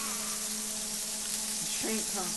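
A large ground-beef patty sizzling steadily in its rendered fat on an electric griddle, just uncovered.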